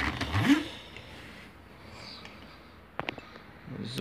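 Faint handling noise, then two sharp clicks close together about three seconds in, as a brass padlock-style lock is clamped into a bench vise.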